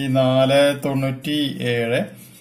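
Speech: a man slowly reading out the digits of a phone number in drawn-out syllables held on a steady pitch, almost chanted. The voice stops at the very end.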